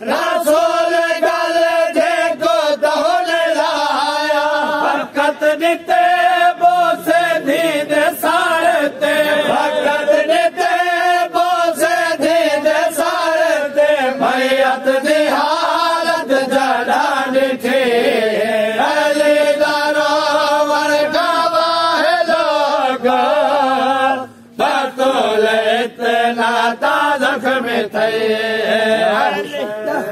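Group of men chanting a noha, a Shia lament, together in melody through a microphone, with a brief pause a little over three-quarters of the way through.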